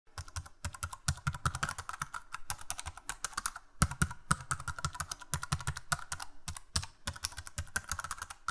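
Typing sound effect on a computer keyboard: a fast, uneven run of key clicks with a couple of brief pauses, stopping suddenly.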